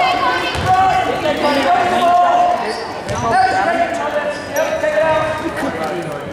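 A basketball bouncing on a hardwood gym floor, with players, coaches and spectators calling out in the echoing gymnasium.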